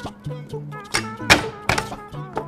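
A cleaver knocks three times on a wooden cutting board in the second half as shiitake mushrooms are flattened and cut, over background music.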